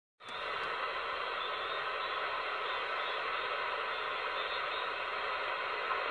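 Steady hiss of band noise from an AnyTone AT-6666 transceiver's speaker on the 10 m band, with the RF gain fully up and no station coming through.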